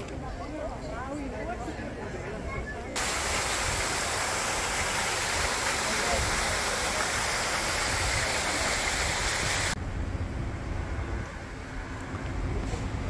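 A crowd's voices chattering, then, starting suddenly about three seconds in, a wall fountain's water spouting and splashing into its stone basin in a steady rush that cuts off near ten seconds.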